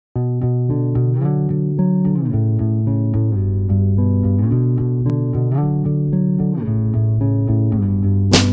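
Background music: a plucked bass and guitar playing a line of short notes in a steady rhythm.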